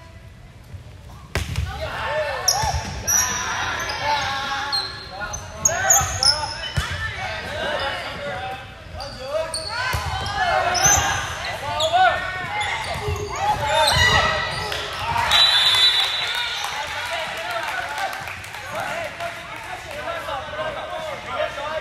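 Volleyball rally on a hardwood gym court: a sharp ball strike about a second in, then sneakers squeaking over and over, the ball being hit several more times, and players calling out, all echoing in the hall.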